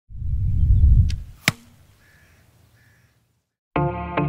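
An arrow in flight, a low whoosh lasting about a second, then striking the target with a sharp hit about a second and a half in, followed by a faint fading tail. Music with a regular beat starts near the end.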